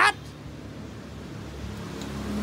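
A woman's rising question cuts off at the very start, then low steady background noise; about one and a half seconds in, a low mechanical hum swells up and holds.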